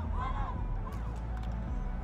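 Distant voices from a rugby sevens team huddle, a few short calls early on, over a steady low rumble.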